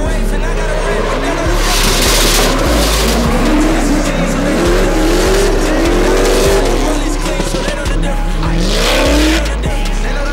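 Turbocharged inline-six drift car engine revving hard, its pitch climbing twice, with bursts of rear-tyre squeal as the car slides sideways. Rap music with a heavy bass runs underneath.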